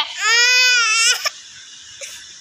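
A small child's single drawn-out cry, about a second long, high-pitched and wailing.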